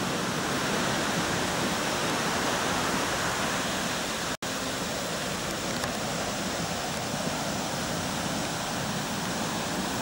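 Steady rushing roar of breaking surf and white water, with no distinct individual wave crashes. The sound cuts out for an instant a little before halfway, then carries on unchanged.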